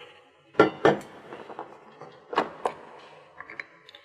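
Stainless steel mixing bowl and metal mixer attachments being handled: sharp clinks and knocks in two close pairs, about a second and a half apart, then a few lighter ticks.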